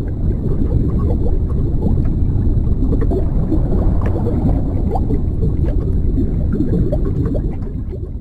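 The ReSound Relief app's 'Underwater' tinnitus masking sound: a deep, low underwater rumble with scattered small pops, still swelling at the start and fading out near the end as it is paused.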